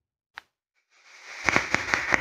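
Vape coil firing as a puff is drawn through the atomizer: after a single faint click, a rising airy hiss begins about halfway in, broken by sharp crackling pops of e-liquid sizzling on the hot coil.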